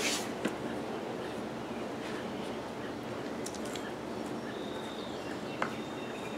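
Soft rustling of loose potting soil as handfuls are dropped and spread by hand on top of a bucket of soil, faint against a steady background hiss, with a small click near the end.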